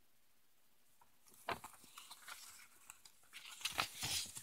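Faint rustling and soft ticks of comic book pages being handled and turned, starting about a second in, with a sharper tick near the end.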